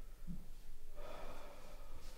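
A person's breath, drawn in sharply like a gasp, starting about a second in and lasting about a second, after a brief soft thud.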